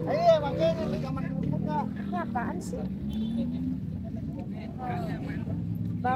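Voices of a busy street market, one voice clear in the first second and others fainter after, over a steady low rumble of motor traffic.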